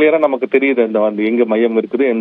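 Speech only: a man talking in Tamil, sounding thin and narrow, as over a telephone line.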